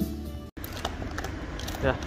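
Shop background music for about half a second, then after a cut, a Doberman chewing a dried chew ear, with irregular crunchy clicks.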